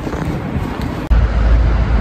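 Wind blowing on the microphone: a noisy rush, broken off by an abrupt cut about a second in, then a heavier low rumble.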